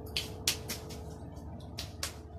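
Eating sounds from people eating pizza: a quick run of short, sharp wet clicks of lip-smacking and chewing, about six in two seconds, over a faint steady hum.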